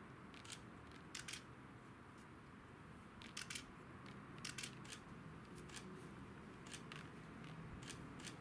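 Faint, irregular sharp clicks and ticks, some in quick pairs, over a quiet hiss.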